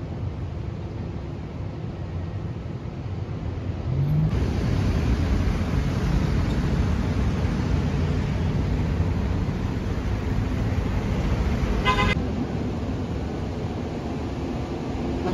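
City road traffic: a steady rush of passing cars and buses that grows louder about four seconds in, with one short car horn toot near the end.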